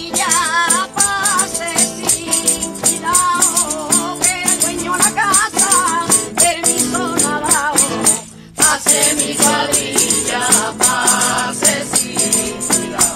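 Flamenco villancico performed live: a woman sings with wavering, ornamented lines while beating a pandereta (jingled frame drum), over flamenco guitar, with a brief pause about eight and a half seconds in.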